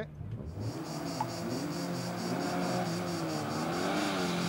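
A small hatchback race car's engine revving up and down as it works through a slalom of cones toward the listener. Insects chirr steadily in the background, pulsing about four times a second.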